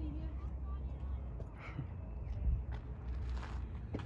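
Uneven low rumble of wind on a phone microphone in the open, with a few faint short sounds over it.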